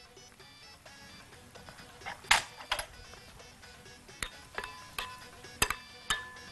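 Metal fork clinking against a glass mixing bowl while beating egg: two sharp clinks about two seconds in, then a quicker run of ringing clinks in the last two seconds, over soft background music.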